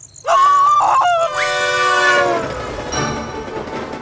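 Cartoon steam-locomotive whistle, sounded in short blasts and then one longer blast with a hiss of steam, followed by orchestral theme music starting.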